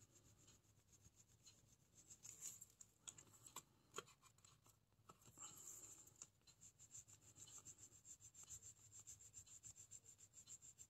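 Faint rubbing and scratching of a Mont Marte water-soluble oil pastel stick on watercolor paper, in quick back-and-forth coloring strokes that become steady from about halfway through. A few light knocks come between two and four seconds in.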